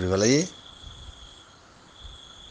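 A man's voice ends about half a second in, leaving a faint, steady, high-pitched trill of a cricket in the background.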